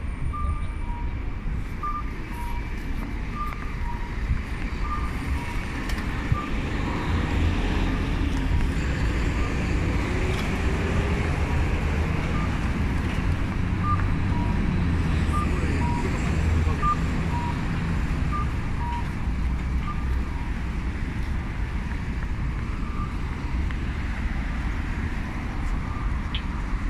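Japanese audible pedestrian crossing signal: short electronic chirps, a higher note then a lower one, repeating about every second and a half and stopping shortly before the end. Steady road traffic rumble underneath, swelling as vehicles pass in the middle.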